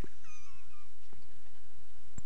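A faint, short, high wavering squeak about a quarter of a second in, lasting under a second, over a steady low hum, with a couple of soft clicks.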